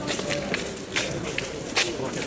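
Footsteps of a group walking on pavement, with people talking in the background and a few short sharp clicks.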